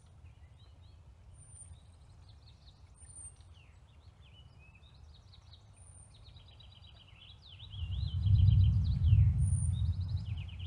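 Songbirds chirping and trilling, with a short high whistle repeated every second or two. A low rumble runs throughout and grows loud about eight seconds in for a couple of seconds.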